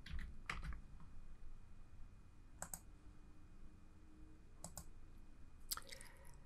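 Faint computer keyboard keystrokes and clicks, coming in short pairs every second or so, as a number is typed into a dialog box.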